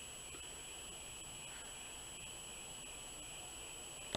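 Steady background hiss with a faint, unchanging high-pitched whine, the room tone of the recording during a pause in speech.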